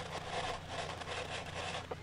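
Hand sanding: sandpaper on a block rubbed over the edge of a guitar body and its plastic binding to level them.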